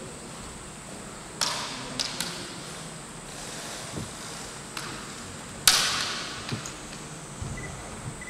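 Bamboo shinai striking in a kendo bout: a handful of sharp cracks with short ringing tails, the loudest about six seconds in, among lighter clacks and a few dull thumps.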